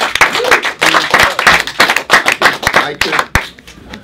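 Small group applauding, dense hand clapping that dies away about three seconds in.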